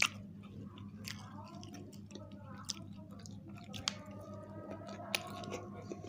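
Two people chewing and biting into pizza close to the microphone, with sharp, wet mouth clicks every second or so over a steady low hum.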